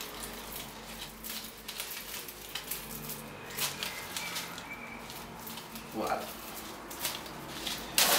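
Rustling of leaves and flower stems and the crinkle of raffia as a hand-tied bouquet is bound and pulled tight, in irregular small clicks and rustles.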